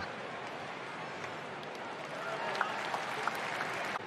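Ballpark crowd applauding an out, a steady haze of clapping and crowd noise that swells slightly past the halfway point.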